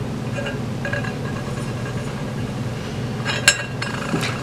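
Metal drawer pulls clinking against a marble slab: a quick cluster of sharp clicks about three and a half seconds in, over a steady low hum.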